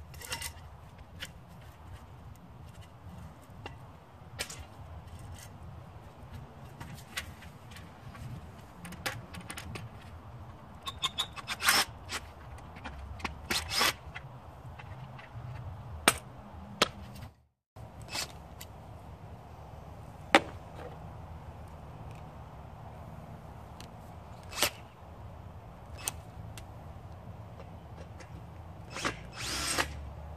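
Hand tool work on scrap aluminum extrusion: scraping and working at the metal, with sharp metallic clicks and clinks every second or two, the loudest a few seconds apart in the second half.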